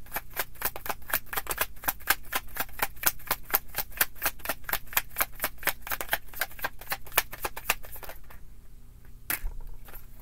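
A tarot deck being shuffled by hand, the cards clicking against each other in a quick, even run of about five or six a second. The shuffling stops about eight seconds in, and a single sharper snap of cards comes near the end.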